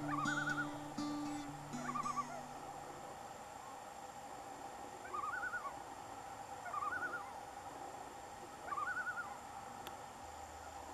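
Common loon giving its tremolo call: short quavering bursts of about half a second, five times over the stretch, the first two overlapping guitar music that fades out within the first few seconds.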